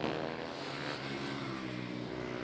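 Several single-cylinder supermoto race bikes running hard together through the corners, their engine notes overlapping, each dipping and rising in pitch.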